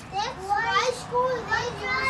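Young children's high-pitched voices: a string of short, wordless calls and excited chatter while they play with a ball.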